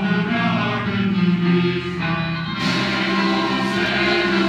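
Mixed choir singing a Korean-language Christmas carol arrangement to instrumental accompaniment, in sustained chords. A new phrase begins about two and a half seconds in, brighter in the high end.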